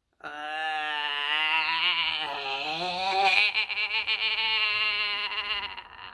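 A woman's long, drawn-out moan in a zombie voice, one held 'eee' with a slowly wavering pitch lasting over five seconds.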